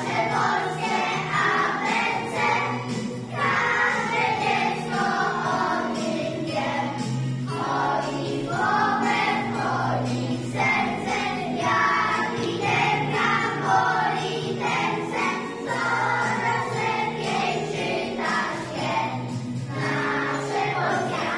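A group of children singing a song together in unison over a musical accompaniment that holds steady low notes.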